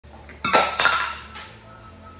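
Metal clattering: a couple of hard clanks about half a second in that ring on as they die away, and a lighter clink near the middle.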